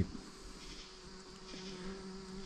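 A steady, low buzzing hum, insect-like, over faint woodland background.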